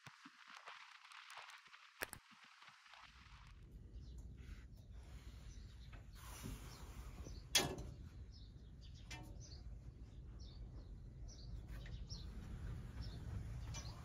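Quiet outdoor ambience: a low steady rumble with small birds chirping in short, repeated calls from about eight seconds on. A single sharp click about halfway through is the loudest sound.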